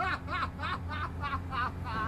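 A man's laughing fit: a rapid, unbroken run of short pitched laughs, about three a second, over a steady low hum.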